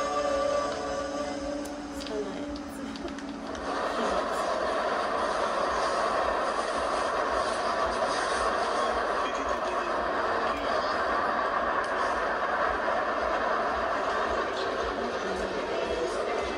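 A short musical intro, then from about three and a half seconds in a steady, dense rumbling ambient noise, like a moving train or a busy street, with faint tones beneath.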